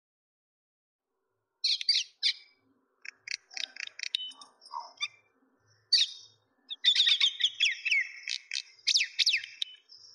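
Small birds chirping in quick runs of short, high, sweeping calls. The calls start a couple of seconds in and are busiest near the end.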